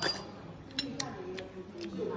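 A few faint, sharp clicks spaced irregularly over a quiet room murmur: small table and tasting sounds as a spoonful of liquid dessert is tasted from a glass cup.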